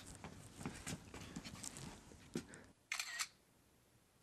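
A camera shutter click: one short, bright snap about three seconds in, after faint rustling and small knocks.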